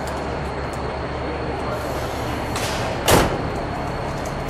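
A car door on a 1970 Plymouth Superbird shut with one solid slam about three seconds in, a lighter knock just before it, over steady background noise.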